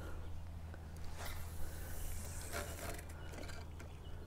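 Faint rustles and clicks of a fishing rod and spinning reel being handled through a cast, with a light high hiss in the middle, over a low steady hum.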